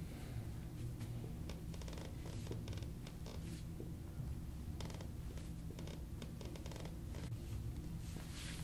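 Faint rustling and scratchy rubbing of hands pressing and moving over a person's back through a fitted top, with light creaks, in short scattered bursts over a low steady hum.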